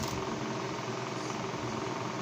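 Steady background hum with faint tones and no sudden events.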